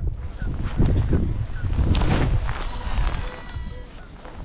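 Wind buffeting the microphone in gusts, with a few short high chirps and a brief steady tone near the end.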